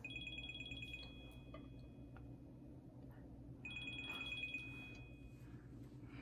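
A faint electronic ringing tone that rings twice, two steady high pitches sounding together with a short warble at the start of each ring. Each ring lasts about two and a half seconds, about a second apart.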